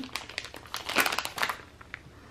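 Clear plastic wax-melt bag crinkling as it is handled, busy for the first second and a half and then dying away.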